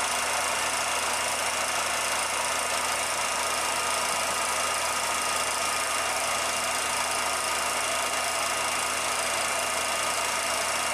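A film projector running: a steady mechanical whir with a few constant hum tones, unchanging throughout.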